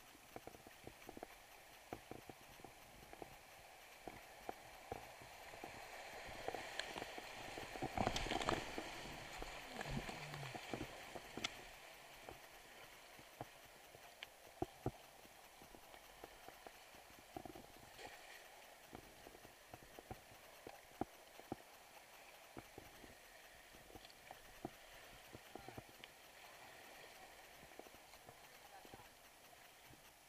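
Kayak paddling on a creek: irregular knocks and clicks of the paddle against the boat, with splashing and rushing water. The water noise swells and is loudest about six to eleven seconds in.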